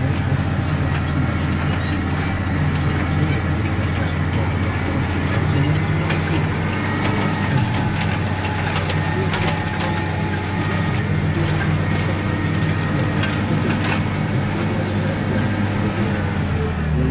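Tractor engine running at a steady speed under load while pulling a spring-tine cultivator through the soil. Scattered sharp clicks and rattles from the implement and the cab sound over the drone.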